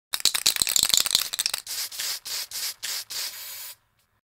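Aerosol spray-paint can shaken hard, its mixing ball rattling quickly for about a second and a half, then sprayed in five short hissing bursts.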